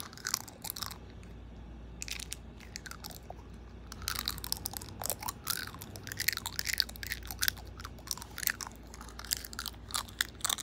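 Close-up crunchy chewing: a snack being bitten and chewed right by the phone's microphone, in quick irregular crunches with a couple of short pauses.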